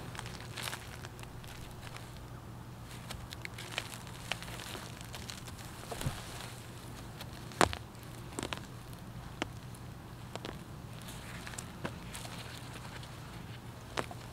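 Dry, dead eggplant stems and leaves crackling and snapping as they are handled and pulled, with scattered clicks and a few footsteps. The sharpest snap comes about seven and a half seconds in, over a faint steady low hum.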